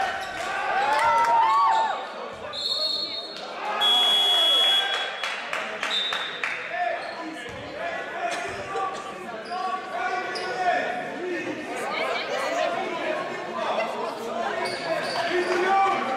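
Basketball shoes squeaking on a sports-hall floor, then two shrill referee whistle blasts about three and four seconds in, the second one longer, stopping play. Afterwards come voices and the ball bouncing, in a reverberant hall.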